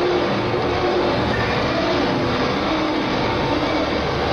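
Amplified sandpaper scraping played as a live DJ set, a harsh, steady noise with faint wavering tones underneath. It is heard through a muffled, lo-fi cassette bootleg recording.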